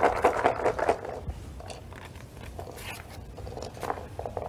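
Paper rustling and light clicks as papers and draw items are handled at a table, busiest in the first second and then quieter with scattered clicks.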